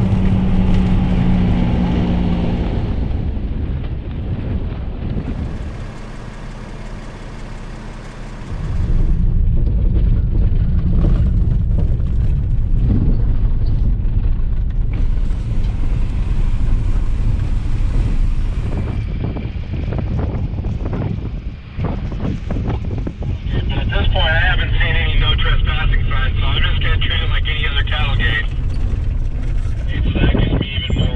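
Vehicles driving on gravel and dirt desert roads, a steady low rumble of engine and tyres. It drops quieter for a few seconds, then comes back louder from about nine seconds in as the shots change.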